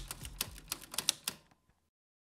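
A quick run of typewriter-key clicks, a sound effect over the fading bass of the intro music, dying away about a second and a half in.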